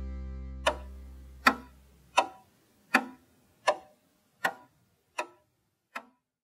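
The last strummed chord of an acoustic guitar dies away, and under it begin sharp, evenly spaced ticks, eight in all, about one every three-quarters of a second, like a clock ticking.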